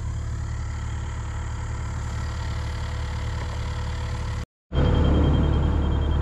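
Excavator's diesel engine idling steadily. About four and a half seconds in, the sound cuts out for a moment and comes back louder.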